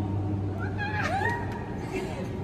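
A girl's high-pitched squeal that rises and then falls in pitch, over a steady low hum.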